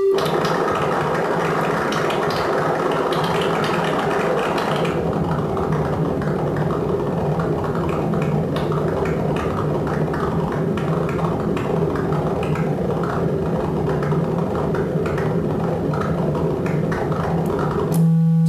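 Triangle-wave Dixie oscillator with its pitch modulated by analog noise from a Żłob Modular Entropy noise module. It gives a low, buzzy tone that wavers rapidly and randomly in pitch at a steady level, and turns duller about five seconds in.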